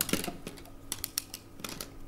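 Light, irregular clicks and taps, about five a second, like typing on a keyboard.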